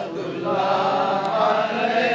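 A crowd of voices chanting together in long, held notes: a devotional Islamic recitation of salutations to the Prophet.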